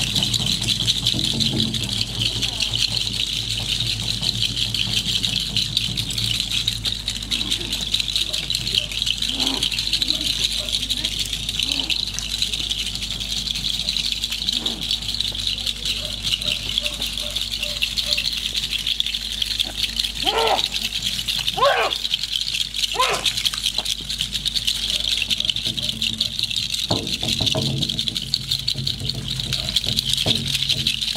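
Hand rattles shaken without pause in a steady, dense rattle for the whole stretch, with three short rising vocal calls a little past the two-thirds mark.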